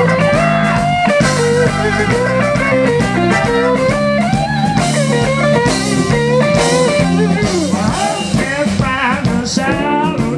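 Live blues band playing: an electric guitar lead with bent, wavering notes over steady bass and held keyboard chords, with drums and cymbals.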